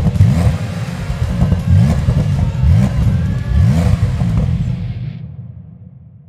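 Porsche 911 Carrera 4S twin-turbo flat-six with sport exhaust, freshly started and revved in a series of quick blips, each rising in pitch. The sound fades out near the end.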